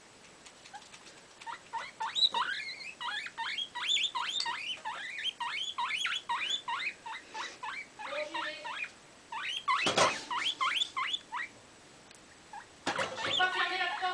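Guinea pig chattering: a long run of short, quick squeaks, each dropping in pitch, about three or four a second. The run is broken by a brief noise about ten seconds in, and longer, pitched calls follow near the end.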